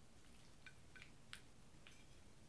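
Near silence, with four or five faint, short clicks of a man eating with a fork from a plate of food.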